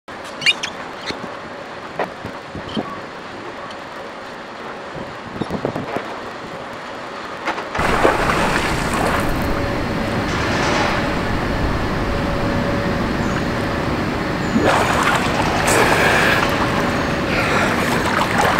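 A quieter outdoor hush with a few faint clicks, then, about eight seconds in, louder water sloshing and splashing as a person swims in a pool, over wind rumble on the microphone and a faint steady hum.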